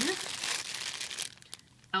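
Clear plastic bag of wax melts crinkling as it is gripped and turned in the hands, for about the first second, then fading.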